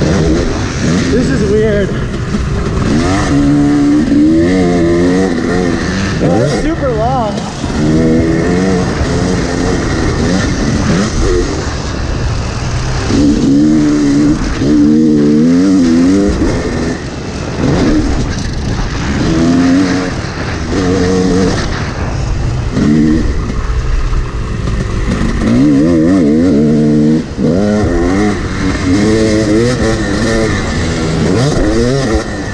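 Yamaha YZ250 single-cylinder two-stroke dirt bike engine being ridden hard, its pitch climbing as the throttle opens and dropping back as the rider shifts or rolls off, over and over.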